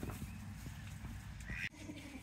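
A goat pulling hay from a slatted pallet feeder and munching, with faint rustles and clicks over a low steady rumble; the sound cuts off suddenly near the end.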